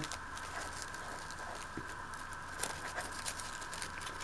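Scissors snipping and working through a tissue-paper wrapping: faint rustling of the paper and a few light clicks over a low steady hum.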